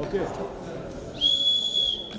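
Referee's whistle: one long, steady blast starting a little over a second in, halting the wrestling.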